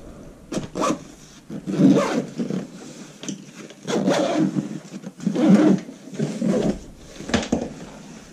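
A packed fabric camera bag being handled and closed up: a series of separate rustling, scraping bursts with short gaps between them.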